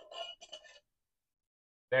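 Faint, brief clinks and a scrape from a small glass candle jar with a metal lid being turned over in the hands, all within the first second.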